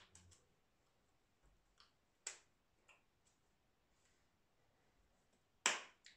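Hands striking and brushing against each other during sign language, giving a few sharp claps: one at the start, another about two seconds in, and the loudest just before the end, with faint clicks in between.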